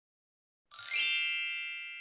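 A single bright bell-like chime sound effect, coming in a little under a second in and ringing on as it slowly fades.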